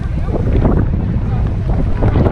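Wind buffeting the microphone in a loud, steady rumble, with road traffic passing beneath it.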